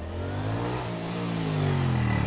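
Honda CX650 V-twin motorcycle riding toward the listener, its engine note rising in pitch and then easing off, and growing louder as it nears.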